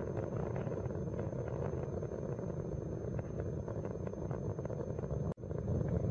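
Space Shuttle Columbia's solid rocket boosters and three main engines during ascent, heard as a steady crackling rumble. The main engines are throttled back as the shuttle goes through the sound barrier. The sound cuts out briefly about five seconds in.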